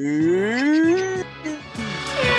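A man's voice holding one long note that slides upward for about a second, then brief laughter.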